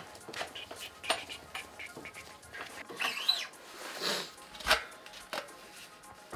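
Scattered light clicks and taps of hand tools and metal bicycle parts being worked, with a brief squeak about three seconds in.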